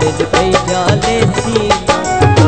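Saraiki folk song performed live: a male voice singing over instrumental accompaniment with a steady percussion beat.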